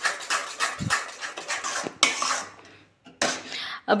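A spatula scrapes and stirs thick, cooked gram-flour and buttermilk batter around the pan, making a quick run of scrapes and knocks against the pan. The stirring breaks off briefly about two and a half seconds in, then resumes.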